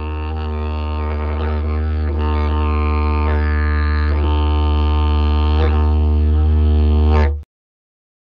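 Didgeridoo playing one continuous low drone with shifting upper tones. It slowly grows louder and cuts off abruptly near the end.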